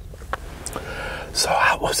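A man speaking softly, close to the microphone, from a little over halfway in, after a few faint clicks.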